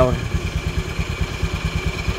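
First-generation Honda Vision scooter's single-cylinder fuel-injected engine idling, heard at the exhaust as a steady, even putter of about a dozen pulses a second. It runs smoothly, with almost no mechanical noise.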